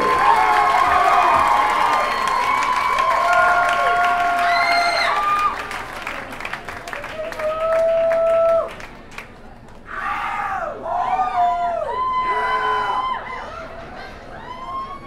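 Concert crowd cheering, with many whoops and yells close to the microphone; the cheering thins out a little past halfway, then swells again with a fresh round of shouts.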